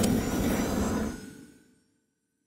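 Logo sting sound effect: a noisy whoosh with a low rumble that holds for about a second, then fades out over the next half second.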